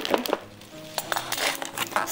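Unpacking noises: a glass jar being set down and cardboard packing being handled. There are a few short knocks and rustles, with soft background music underneath.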